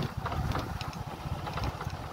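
Wind buffeting the microphone outdoors, a low, uneven rumble with a few faint clicks.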